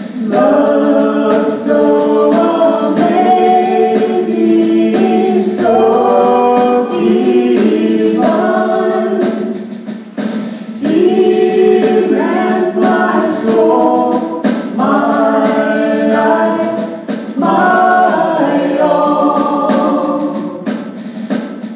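Church praise band performing a worship song: several voices singing together over acoustic and electric guitars and keyboard, phrase by phrase with a short lull about halfway.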